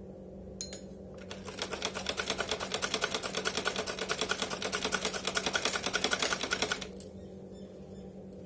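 Singer sewing machine stitching a seam: a rapid, even clatter from the needle mechanism. It starts about a second in, grows louder, and stops abruptly near the seven-second mark.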